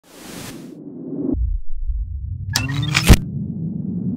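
Label-logo intro sound effects. A short hiss opens it, then a deep rumble builds. About two and a half seconds in comes a whooshing sweep rising in pitch that ends in a heavy boom. A low rumbling drone follows.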